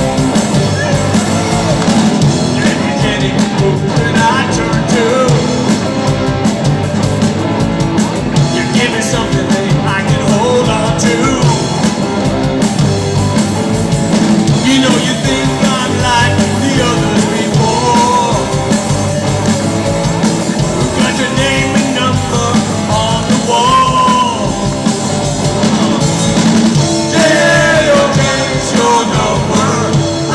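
Live rock band playing a loud, full-band song with electric guitars, bass guitar and drums, with singing over it.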